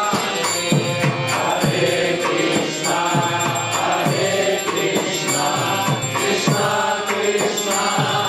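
Group kirtan: voices chanting a mantra together over a hand drum beating about two strokes a second.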